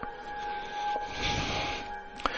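Quiet ambient background music in a pause between narration: a steady held tone over a soft airy wash that swells a little about halfway through.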